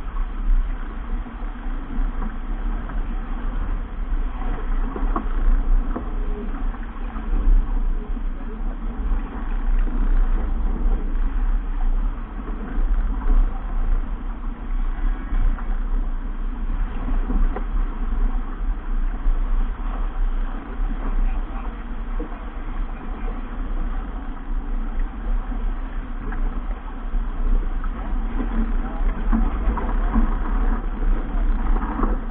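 Wind buffeting the microphone in a steady, gusting rumble, over the rush and splash of water along the hull of a keelboat sailing heeled.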